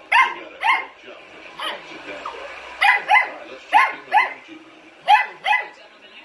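A dog barking: sharp, high-pitched barks, mostly in quick pairs, about ten in all.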